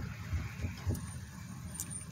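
Low, steady rumble inside a parked vehicle's cabin, with a few faint soft thumps in the first second and a short click near the end.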